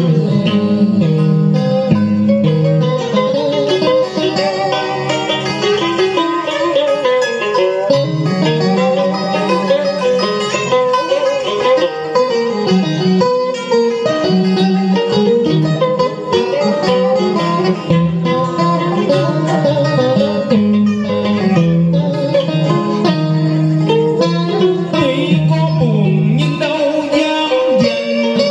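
Instrumental interlude of a karaoke backing track for a duet, with plucked strings to the fore, playing steadily and loudly.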